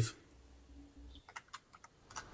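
A few faint keystrokes on a computer keyboard, a quick run of clicks in the second half, heard over a video-call microphone.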